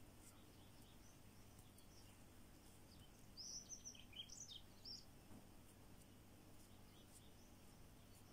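Near silence with a low steady hum. About halfway through comes a short run of faint, high bird chirps.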